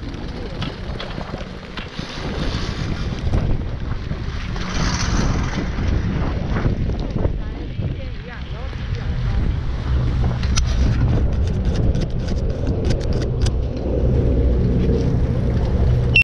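Wind buffeting a GoPro's microphone in a snowstorm, a low rumble that grows louder in the second half. A quick run of sharp clicks and knocks comes about ten seconds in as the chairlift reaches its top station.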